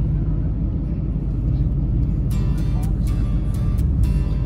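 Steady low rumble of a car's road and engine noise heard from inside the cabin. Background music with a regular beat comes in a little over halfway through.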